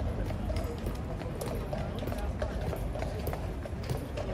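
Indistinct voices of people talking over a steady low rumble, with short clicks or knocks at irregular intervals.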